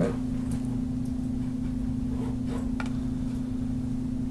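Steady low electrical hum of room tone, with a few faint clicks scattered through it.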